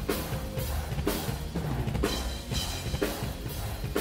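Drum-cam mix of a live symphonic metal performance: a rock drum kit played hard, with bass drum, cymbals and sharp hits about twice a second, loud over the band's music.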